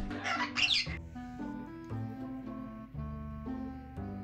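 A white-capped pionus parrot gives a brief call in the first second. Background music then takes over, with held notes over a steady bass beat.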